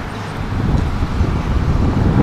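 Wind buffeting the microphone: a fluctuating low rumble of noise with no distinct events.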